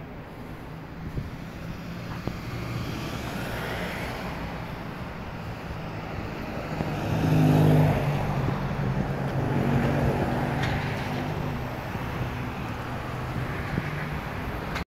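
Road traffic passing. A car drives close by about halfway through, its engine loudest then, with another vehicle going past a couple of seconds later.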